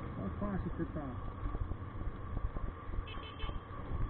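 Motorcycle riding through town traffic, heard from the rider's camera: a steady low rumble of engine and wind. A voice speaks faintly in the first second, and there is a brief high beeping about three seconds in.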